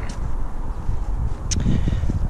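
Wind buffeting the camera's microphone, an uneven low rumble, with one short click about one and a half seconds in.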